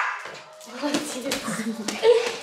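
A small Pomeranian barking in play at a ball held above it, loudest right at the start.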